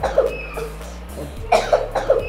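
Two short bouts of a person coughing, a few sharp bursts each, the second about a second and a half in, over soft background music.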